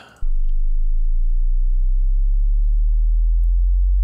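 Sine-sweep test tone, still at the bottom of its range: a single pure, deep tone that comes in about a quarter of a second in and holds steady and loud.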